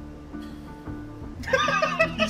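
Quiet film score with low held notes, then two men laughing loudly from about one and a half seconds in.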